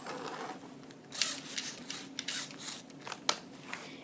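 Close handling of a plastic Lego model: rubbing at first, then a run of light clicks and taps from about a second in.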